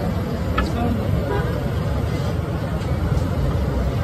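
Busy street ambience: a steady low traffic rumble under crowd chatter, with a light click about half a second in, likely the metal ladle touching the steel batter pot.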